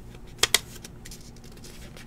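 Two quick sharp clicks, about a tenth of a second apart, about half a second in, over faint handling sounds at a table.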